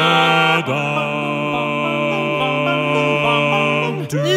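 Male barbershop quartet singing a cappella, holding a wordless sustained chord that changes to a new chord about half a second in and is then held, with small moving inner parts, to the end.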